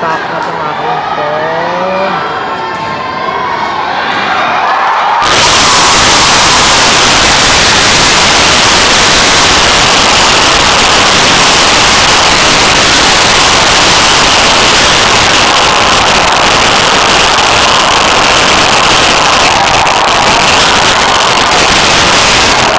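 Arena crowd during a high bar routine: voices at first, then about five seconds in the crowd breaks into loud, sustained cheering that holds steady for the rest of the time.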